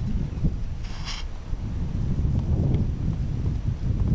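Wind buffeting an action camera's microphone: a low, uneven rumble.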